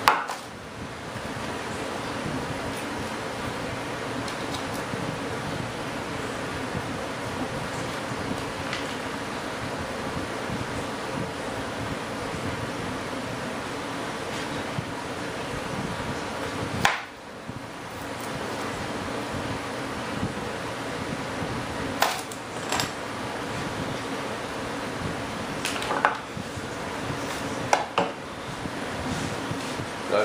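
Steady mechanical hum like a shop fan, with a few sharp knocks and clatters as kevlar fuel-tank shells and tools are handled on a workbench, one at the start and several in the second half.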